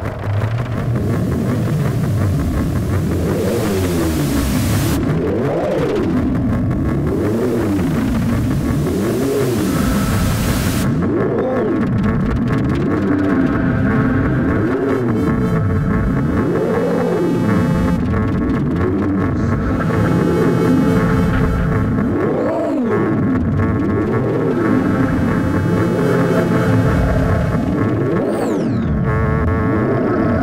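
Live electronic music: synthesized tones sweep up and down in pitch in repeated arches, roughly one a second, over a bright hiss of noise. The hiss drops away about eleven seconds in, leaving the gliding tones over steady held notes.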